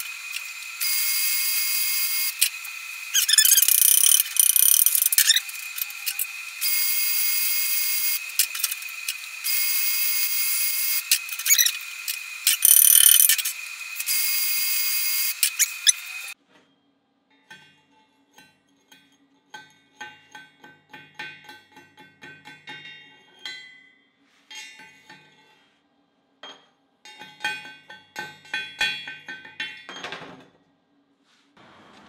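Dual-shield flux-core wire welding arc on steel, crackling and hissing in several runs of a few seconds each with short stops between them. The arc cuts off suddenly about sixteen seconds in, and quieter background music follows.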